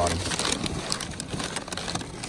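Crumpled newspaper packing rustling and crinkling as a glazed ornament is lifted and turned over in a cardboard box, with a few light clicks.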